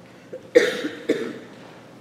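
A person coughing twice, the two coughs about half a second apart, the first the louder.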